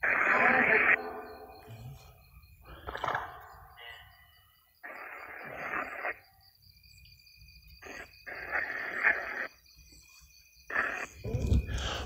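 Ghost-hunting spirit box giving short, choppy bursts of radio static and clipped voice-like fragments that switch on and off abruptly, about six in all, with silent gaps between.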